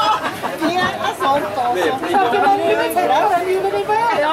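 Chatter of several people talking at once, with no clear music playing.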